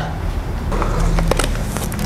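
A few light clicks and scrapes of a cardboard shipping box being slit open and handled.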